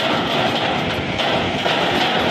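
Steady, loud street noise of vehicles running, with no single sound standing out.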